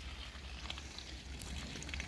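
Faint trickle of a shallow stream running over stones, with small scattered ticks and a steady low rumble underneath.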